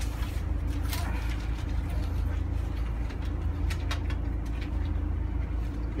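Steady low mechanical hum, with scattered soft wet clicks and squelches from hands working shampoo lather into a small dog's wet coat.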